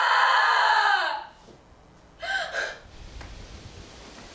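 A young woman screaming, one long high cry that falls away about a second in, then a shorter, broken cry about two seconds in.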